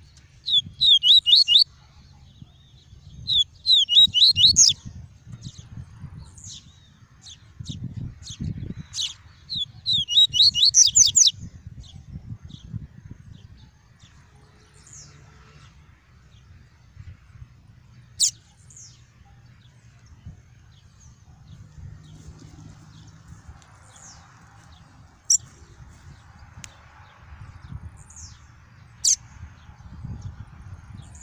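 Male yellow-bellied seedeater (papa-capim) singing its tuí-tuí song: three fast runs of repeated high notes in the first dozen seconds, then scattered single sharp notes.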